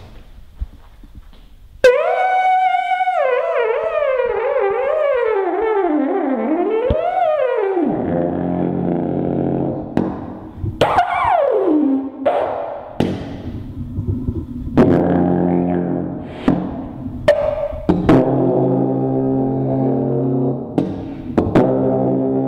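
Alphorn, a long wooden natural horn, being played. After a brief quiet start, one note wavers up and down while sliding steadily lower over about six seconds, then lower notes are held, broken midway by a quick slide down from a high note.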